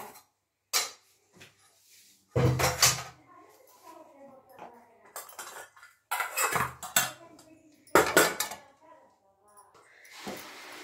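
Steel kitchen utensils clattering and clinking as they are handled at a sink, in several separate clanks, the loudest about two and a half seconds in and again near the end.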